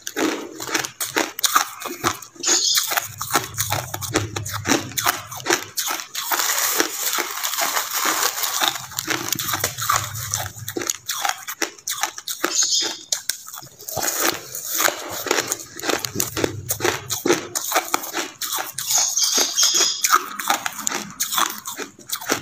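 Crushed white ice being bitten and chewed close to the microphone: a dense, continuous run of crunches. A low hum swells and fades a few times.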